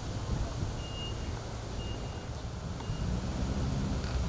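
Low engine rumble with a vehicle's reversing beeper sounding three high, single-pitched beeps about a second apart.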